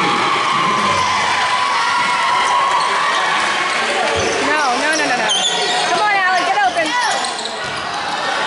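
Basketball game sounds in a reverberant school gym: a steady din of spectators shouting and calling out, with a basketball bouncing. A quick run of high squeaks, sneakers on the hardwood floor, comes in the second half.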